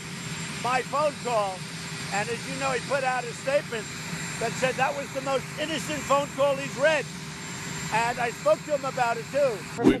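A man talking over a steady whine and hum from the turbine engines of the presidential helicopter running behind him.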